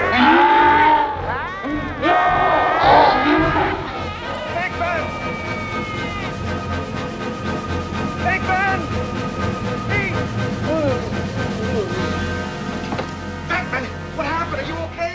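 A man screaming and a ghost creature's wailing, mooing-like cries in the first few seconds. After that, sustained orchestral film score with a low rumble and a few more short rising and falling creature cries.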